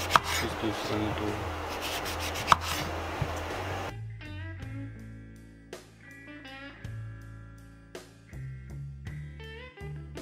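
Kitchen knife cutting through an orange's peel on a wooden cutting board, with a few sharp clicks of the blade, the loudest about two and a half seconds in. Light guitar music plays underneath and is heard alone from about four seconds on.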